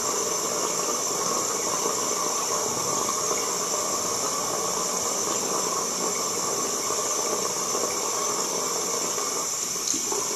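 A steady, even hiss that does not change in level throughout.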